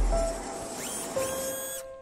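Intro sting music for a show logo. A deep bass swell fades out, a rising swoosh comes about a second in, and then a bright chime tone rings on and fades away.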